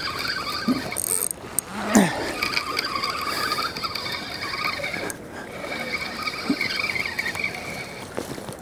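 A spinning fishing reel cranked steadily while a fish is reeled in on the line: a whirring with a high squeal from the reel. The cranking pauses briefly about a second in and again about five seconds in.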